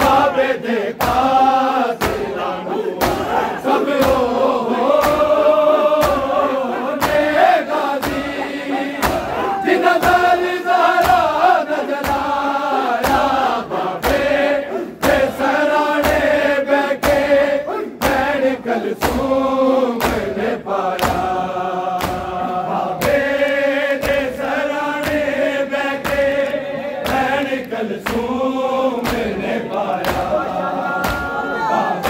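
Men's voices chanting a noha (Shia mourning lament) in unison, with a crowd of bare-chested mourners beating their chests in time: sharp hand-on-chest slaps about once a second through the chant.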